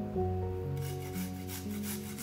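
Soft piano background music, joined about a second in by rapid, evenly repeated scraping strokes.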